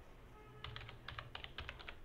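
Computer keyboard typing: a quick, quiet run of several keystrokes starting a little over half a second in.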